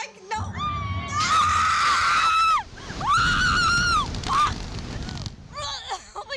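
Two women screaming as a reverse-bungee slingshot ride launches them into the air. There are two long, high screams: the first lasts about two seconds, the second is shorter and comes about three seconds in.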